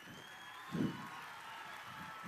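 Quiet pause in a live stage show: faint audience and room noise, with one short low voice sound a little under a second in.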